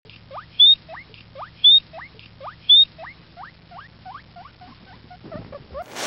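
Guinea pig squeaking: a run of short rising squeaks, two to three a second, fading toward the end. Three louder, higher squeals about a second apart stand out in the first half.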